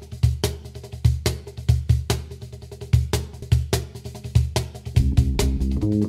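Music: a drum kit playing a steady beat of kick, snare and cymbal strikes. A bass line of plucked low notes joins about five seconds in.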